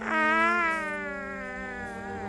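A small creature's warbling, cooing call. It starts suddenly and sinks slowly in pitch over soft held musical notes.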